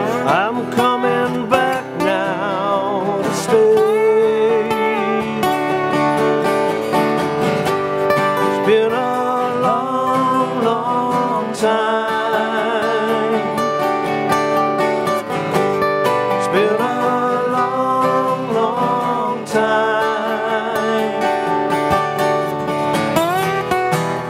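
Two acoustic guitars playing a country-style song, one strumming chords while the other picks a lead line high up the fretboard, with bending, wavering notes.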